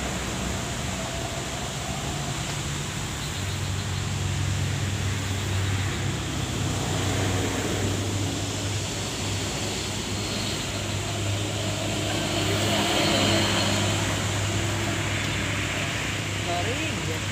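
A heavy engine idling with a steady low hum that comes in about three seconds in, over a wash of road traffic noise.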